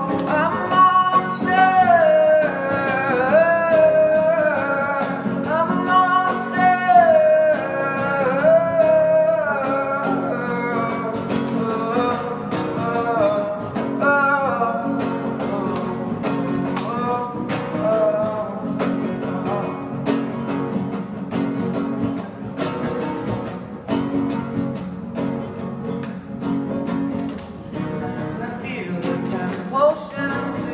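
A song: a sung melody over plucked guitar. The voice is most prominent in the first ten seconds or so, after which the guitar's picked and strummed notes come to the fore.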